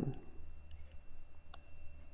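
Faint, sparse clicks and taps of a stylus writing on a tablet screen, over a steady low hum.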